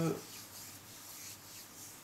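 A drawn-out spoken word trails off, then faint, soft rubbing noise with no distinct knocks or clicks.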